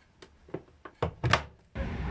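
A handful of light knocks and clicks, about six spread over a second and a half. Near the end a steady outdoor background noise starts suddenly.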